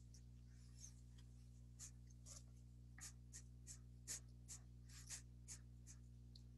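Near silence: a faint low hum with a series of faint, irregular small clicks.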